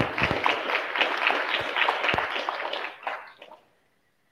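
Audience applauding, dying away about three seconds in.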